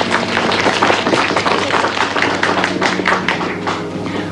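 A rapid, dense run of sharp percussive taps, with a low steady hum underneath.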